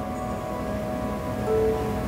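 Soft ambient background music of held, chime-like tones, with a new note coming in about a second and a half in.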